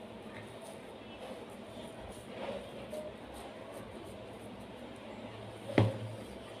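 Faint handling sounds of hands squeezing and pressing a moist minced-chicken mixture in a plastic bowl, with one sharp knock near the end.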